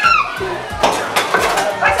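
Wooden foosball table in play: several sharp knocks and clacks of the ball and the rod-mounted plastic players striking the ball and the table walls.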